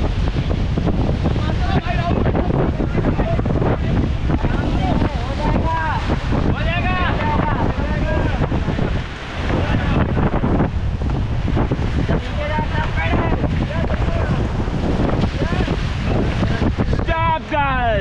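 Loud, steady rush of wind buffeting the camera microphone and river water churning around an inflatable raft being paddled through whitewater. A few voices shout now and then over it.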